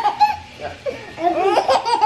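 A baby laughing, with a woman laughing along; a run of quick laughs in the second half.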